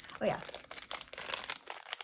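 Aluminium foil wrapper on a small perfume sample vial crinkling as it is pulled open by hand, a dense run of small crackles.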